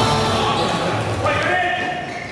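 Live game sound from an indoor floorball match: players' voices and knocks echoing in a large sports hall. A held, high-pitched sound starts a little past halfway.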